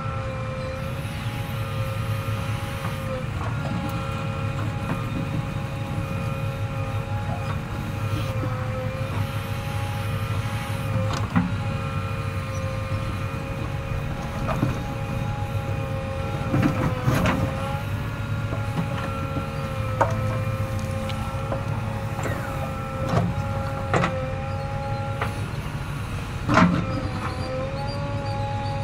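JCB 3DX backhoe loader working its backhoe arm. The diesel engine runs steadily under a high hydraulic whine that wavers slightly in pitch, with a few sharp clunks from the arm and bucket.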